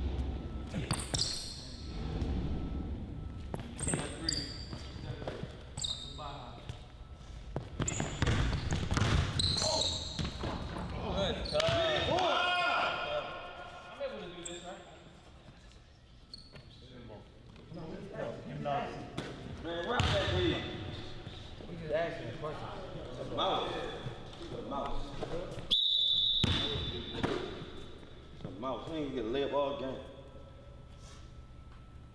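A basketball being dribbled on a hardwood gym floor, a series of sharp bounces in a large hall, with voices calling out at times.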